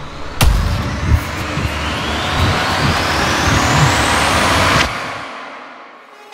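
Edited transition sound effect: a sharp hit, then a rushing noise with a pitch that rises steadily for about four seconds over a low rumble, cut off near the end and fading away.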